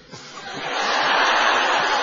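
Studio audience laughing, a dense crowd laugh that builds about half a second in and holds.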